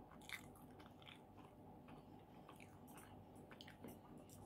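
Faint biting and chewing of a pizza slice, mouth sounds with a few short crackles and crunches scattered through.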